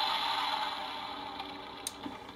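The Transformers Dragonstorm toy's built-in electronic sound effect playing through its small speaker: a noisy, hissing effect that fades away steadily. A small click comes near the end.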